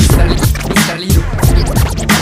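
Instrumental break of a hip hop track: a drum beat over bass, with turntable scratching.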